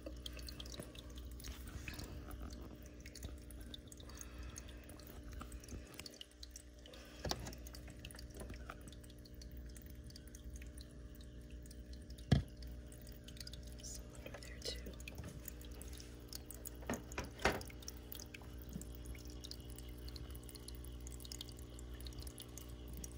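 Aquarium water trickling and dripping into the tank over a steady low hum, with scattered light taps and one sharp knock about halfway through.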